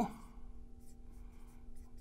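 Marker pen writing on a whiteboard: faint scratching strokes.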